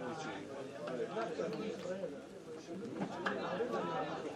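Several people's voices talking and calling out over one another, with no single clear speaker.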